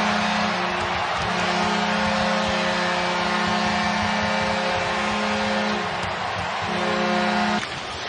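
Arena goal horn sounding after a home-team goal, a long held blast with a short break near the end, over a cheering crowd. It cuts off suddenly just before the end.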